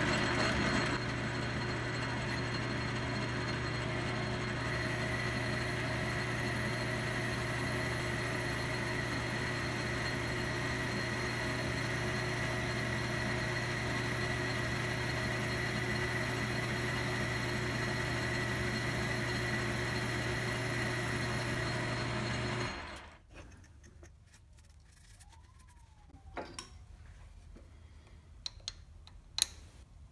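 Logan 10-inch metal lathe running steadily with a strong low motor hum while a boring bar takes a pass inside an aluminium bore; the lathe cuts off suddenly about three-quarters of the way through. After that it is quiet apart from a few light clicks and taps as a gauge is handled in the bore.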